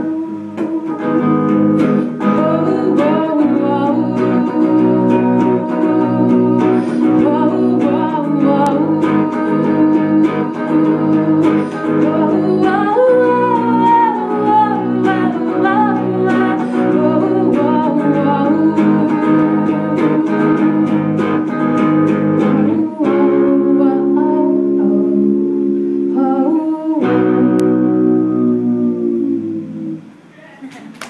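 Electric guitar strummed and picked with a woman singing over it, a live cover song. It closes on long held chords, the last one strummed about three seconds before the end and left to ring.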